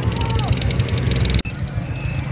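A motor vehicle's engine running with a steady low pulsing beat, with a short falling tone about half a second in. The sound cuts abruptly about one and a half seconds in, then the engine carries on.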